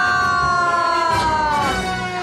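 Bagpipes sounding a held chord of several steady notes whose pitch sags slowly downward, dropping further near the end.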